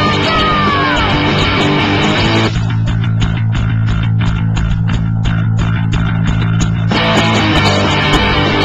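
Punk rock band playing with electric guitars, bass guitar and drums. About two and a half seconds in it drops to a sparse break of bass and steady drum hits, and the full band comes back in near the end.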